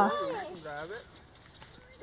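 A person's voice trailing off in the first second, then footsteps on dry grass as light, regular clicks.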